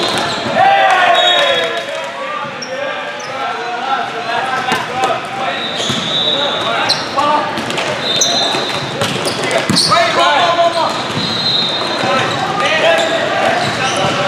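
Volleyball rally in a large, echoing sports hall: sneakers squeaking on the court floor again and again, sharp ball hits, and players and spectators shouting.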